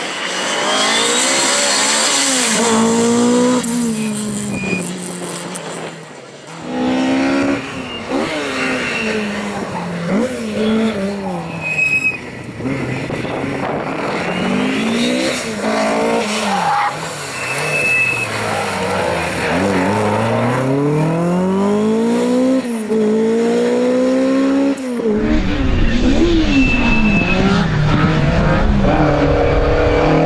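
Mk2 Ford Escort rally car's engine revving hard, its pitch climbing and dropping back over and over through the gear changes, with a few short tyre squeals.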